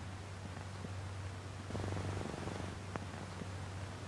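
A steady low electrical hum, with a short rough, rapidly pulsing buzz about two seconds in and a single faint click near the end.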